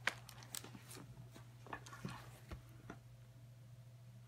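Handling sounds as an open Bible is shifted on a wooden table: a sharp knock at the start, then several light taps and paper rustles, over a faint low steady hum.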